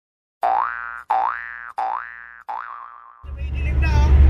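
An intro sound effect: four short electronic 'boing' notes, each sliding up in pitch and fading away, about two-thirds of a second apart. A low rumble swells in over the last second.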